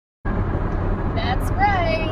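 Silence, then about a quarter second in a steady low rumble of road noise inside a moving car's cabin cuts in. A woman's voice begins over it in the second half.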